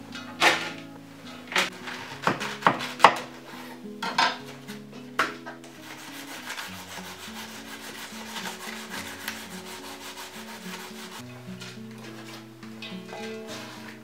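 White cabbage being shredded by hand over a wooden board: a handful of sharp knocks and thumps in the first five seconds, the loudest about three seconds in, then a run of fast, even rasping strokes as the blade cuts through the cabbage head, fading out about eleven seconds in.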